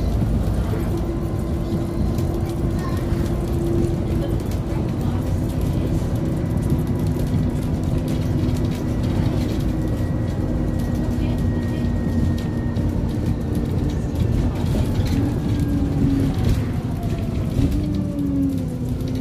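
Alexander Dennis E400 diesel bus heard from inside the passenger saloon while under way: a steady engine and road rumble with a whine from the driveline. The whine's pitch steps lower about five seconds in and glides down near the end.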